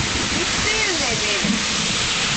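Heavy downpour of rain, a steady, even hiss with no breaks, with faint voices over it.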